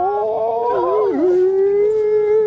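Supercar engine held at high revs, a steady high-pitched note that dips briefly in pitch about a second in and then settles slightly lower.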